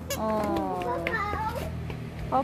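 A young child's drawn-out wordless vocal sound, about a second and a half long, sliding slowly down in pitch.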